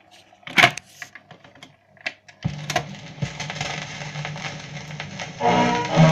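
Record changer clicking and clunking as a 78 rpm record drops and the stylus sets down, then the loud hiss and crackle of a worn shellac 78 in its run-in groove. About five and a half seconds in, the record's band intro starts over the crackle.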